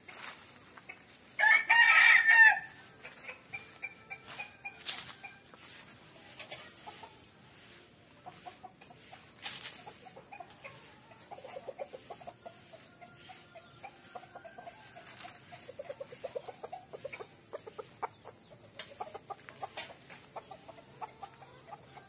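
A rooster crows once, loudly, about a second and a half in. Short bursts of chicken clucking follow around the middle and later on.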